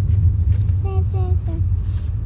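Steady low rumble of a moving car heard from inside the cabin. Three short voice notes, like a child's brief singing or sounds, come about a second in.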